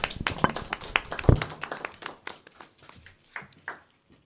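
A small audience applauding. The claps thin out over the last couple of seconds and stop near the end, and there is one dull thump about a second in.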